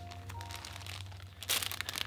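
A plastic bag of soft-plastic fishing baits crinkling as it is picked up and handled, in a short rustling burst about a second and a half in, over quiet background music with held notes.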